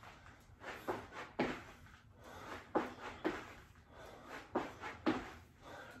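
Feet thudding on a rubber floor mat during squat jacks: short landings that come in pairs about half a second apart, one pair about every two seconds.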